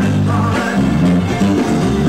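A live rock band playing a song, with guitar.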